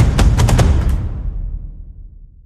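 Sampled cinematic percussion loop: Damage 2 drums layered with Box Factory's cardboard-box ensemble hits, played back in a DAW. Rapid punchy hits with heavy low end stop about half a second in, and the loop's reverberant tail then fades away.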